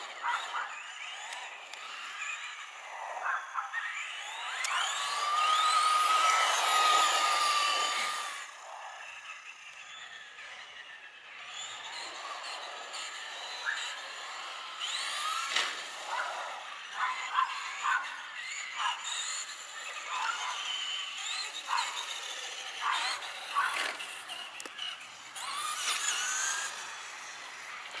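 Electric Traxxas RC trucks driving on asphalt, their motors and gears whining up and down in pitch as they speed up and slow down, with scattered ticks and clicks. Loudest from about four to eight seconds in, where the whine holds steady for a few seconds.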